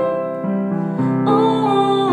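Upright piano playing a song's accompaniment, the notes changing about every half second. From about a second in, a woman's voice sings a held, wavering note over it.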